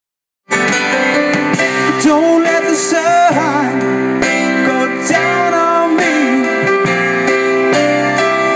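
Small live band starting up about half a second in: a male voice singing over a Roland RD-300 stage piano, a Gretsch drum kit keeping a steady beat, and electric bass.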